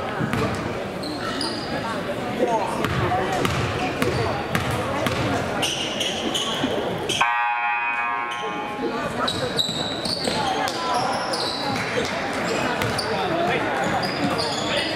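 Gymnasium crowd chatter with a basketball bouncing on a hardwood court and scattered sharp clicks and sneaker noises. A brief buzzing tone sounds about seven seconds in.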